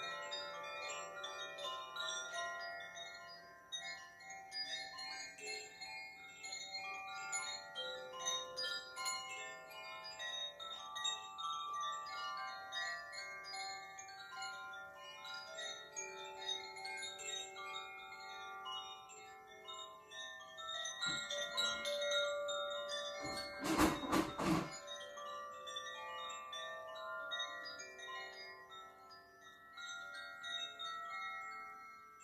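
A pair of hand-held hanging tube chimes swung gently, giving a continuous wash of overlapping ringing tones. About three-quarters of the way through comes a short rattle of knocks, the loudest moment.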